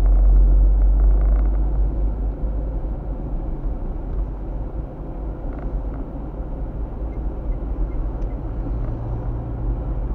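Road and engine noise of a moving car heard inside its cabin: a steady low rumble, heaviest for the first couple of seconds, then settling.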